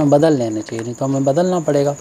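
A man's voice talking slowly, in two drawn-out phrases with a short break near the middle.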